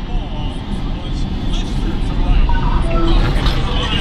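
Steady low rumble of road noise inside a moving vehicle, with faint voices in the background.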